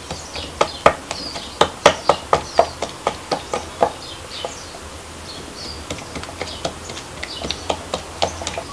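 A knife clicking against a plate as tomatoes are cut, a quick run of sharp clicks over the first four seconds, then sparser ones. Birds chirp in the background.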